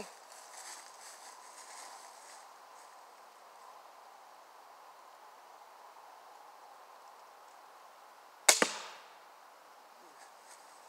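A pistol crossbow firing: one sharp crack about eight and a half seconds in, followed at once by a second, smaller snap and a short fading ring.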